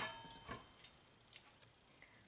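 Glass blender jar ringing briefly and dying away, then a few faint soft knocks as boiled tomatillos are added to it.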